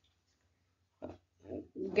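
About a second of near silence, then a couple of short throat and breath sounds from a woman as her speaking voice picks up again near the end.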